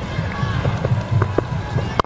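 Stadium background of a televised cricket match: a steady low rumble of crowd and music from the stands, with a few faint short tones and ticks. It drops away suddenly at an edit cut at the end.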